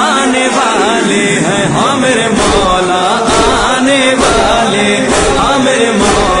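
A man's voice chanting an Urdu devotional refrain in a drawn-out, melismatic style, over a steady beat a little faster than one per second.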